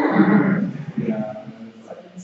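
A man laughing heartily, loudest in the first second and trailing off.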